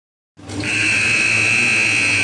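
Silence, then about a third of a second in the sound cuts in to a gymnasium scoreboard horn sounding one long steady high tone, marking the end of halftime, over low gym crowd noise.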